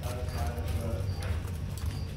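A three-banded armadillo's claws tapping and scratching on bark-chip mulch as it walks, in irregular clicks over a steady low hum, with faint voices in the background.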